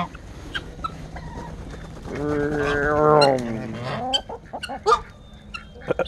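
A mixed farmyard flock of geese, guinea fowl and chickens calling: short clucks and chirps throughout, and one long drawn-out call of about two seconds beginning about two seconds in that drops in pitch as it ends.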